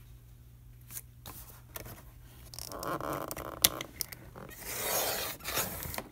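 Sliding paper trimmer's cutting head drawn along its rail, slicing through chipboard: two scraping passes, the first about three seconds in and the second near the end, with a sharp click between them.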